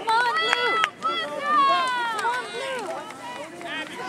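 High-pitched children's voices chattering and calling out over one another, no clear words; one drawn-out call about halfway through falls in pitch.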